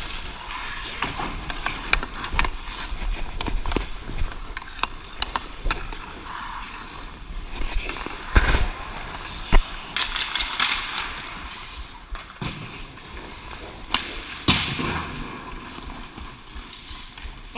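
Hockey skate blades scraping and carving across the ice, with repeated sharp clacks of a hockey stick hitting the puck and the ice. The loudest clacks come a little past halfway and again about three quarters of the way through.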